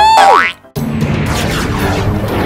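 Cartoon boing-style sound effect with wobbling, bouncing pitch glides, cutting off about half a second in. After a short gap, a dense, noisy music bed comes in.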